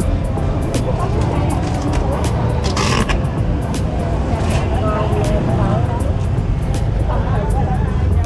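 Busy market ambience: a steady low rumble with faint voices and chatter scattered through it, plus frequent small clicks.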